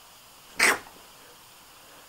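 A single short, loud human sneeze about half a second in.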